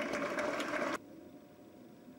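Indoor tennis crowd applauding, a dense rapid clatter of clapping that cuts off abruptly about halfway through, leaving quiet hall ambience.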